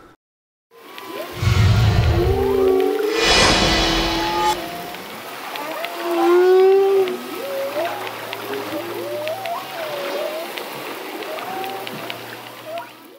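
Whale calls heard underwater: many short tones rising and falling in pitch, one after another, with a low rumble and a rush of noise in the first few seconds.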